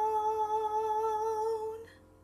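A woman's solo singing voice holding the song's final long note with a steady vibrato, fading and stopping shortly before the end.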